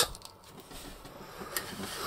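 Faint handling of a plastic action figure, fingers working at its armour piece, with a light click about one and a half seconds in.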